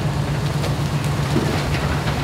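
A wood-frame house burning fully engulfed: a steady rushing noise of flames and spray over a steady low engine hum.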